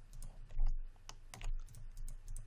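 Scattered clicks from a computer keyboard and mouse, a few separate clicks with the sharpest a little after half a second in.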